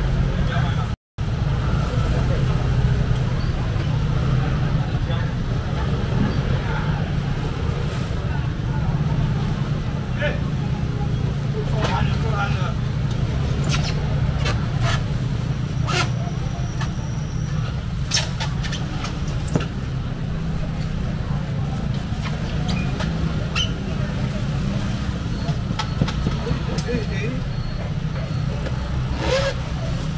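Seafood market stall ambience: a steady low rumble under murmured background voices, with scattered short clicks and plastic-bag rustles as fish are handled and bagged.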